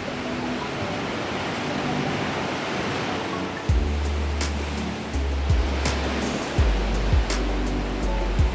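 Surf washing into a rocky sea cave, heard as a steady wash of water noise. About halfway through, background music comes in with a deep bass line and a beat.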